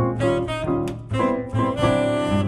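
Tenor saxophone playing a jazz melody of short, quickly changing notes, with an upright double bass plucking low notes underneath.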